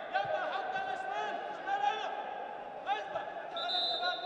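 Indoor wrestling arena ambience: indistinct voices and shouts carrying through the hall, over a steady tone, with a higher steady tone coming in near the end.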